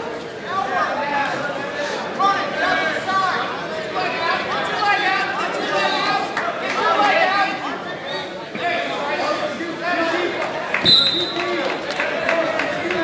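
Spectators' voices talking and calling out over one another, echoing in a large gymnasium, with a brief high steady tone near the end.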